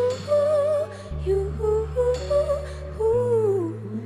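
Female voice singing a wordless, humming melody that bends up and down in slow phrases, over sustained low chords that change twice.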